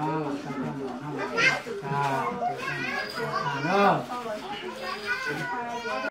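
Several people talking over one another in a crowded room, voices rising and overlapping throughout.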